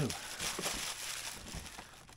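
Bubble wrap and cardboard packaging crinkling and rustling as they are handled, a steady stream of small crackles.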